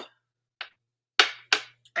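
Two light, sharp clicks about a third of a second apart, from a glass perfume bottle and its cap being handled, with a faint softer rustle shortly before.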